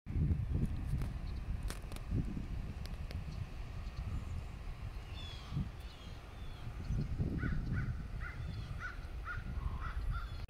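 A crow cawing in a quick run of about eight short calls, roughly two a second, in the last few seconds. A few higher bird chirps come about five seconds in, over a low, gusty rumble on the microphone.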